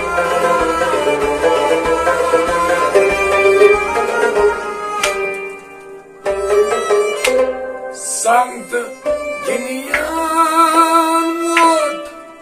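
Kashmiri Sufi folk ensemble playing: a bowed sarangi carries the melody over a plucked rabab, harmonium and a steady hand-drum beat. The music thins out briefly about six seconds in, then a male voice comes in singing over the instruments.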